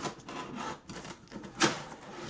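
Cardboard box and plastic packaging rustling and scraping as gloved hands pull a wrapped mini football helmet out of the box, with a sharp knock or scrape about a second and a half in, the loudest sound.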